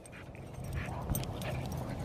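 Pit bull breathing hard and fast while pulling on the leash, a raspy rhythmic panting that comes from excitement rather than poor fitness or bad organs, in the owner's view.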